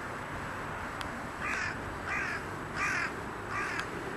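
A bird calling four times, short evenly spaced calls about two-thirds of a second apart, starting about a second and a half in, over a steady background hiss.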